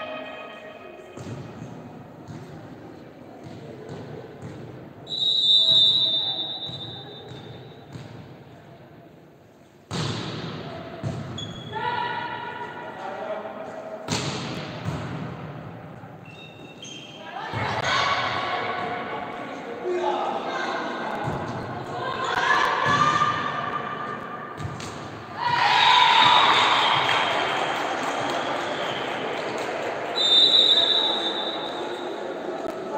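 Indoor volleyball in an echoing sports hall: a referee's whistle about five seconds in, sharp ball hits about ten and fourteen seconds in, and players and spectators shouting during the rally. It ends in loud cheering as a point is won.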